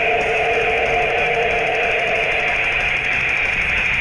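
Rock music with guitar, two notes held for about three seconds before fading.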